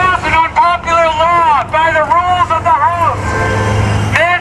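A man shouting through a megaphone, loud, high-pitched and hard to make out, over street traffic; a low vehicle engine hum swells near the end.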